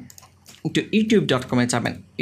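A man speaking in narration, after a short pause of about half a second at the start.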